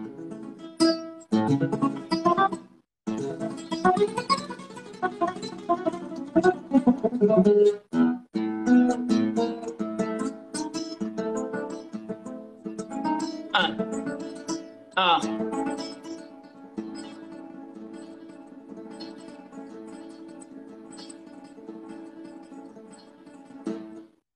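Nylon-string classical guitar played fingerstyle: a fast arpeggio exercise, notes plucked in quick succession with two short breaks. About fifteen seconds in, a last chord is struck and left ringing, slowly dying away.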